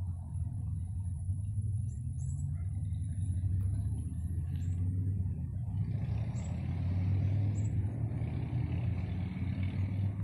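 A steady low rumble that grows fuller about six seconds in.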